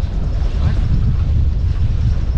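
Wind buffeting the microphone aboard a sailing yacht: a loud, steady low rumble that flutters irregularly.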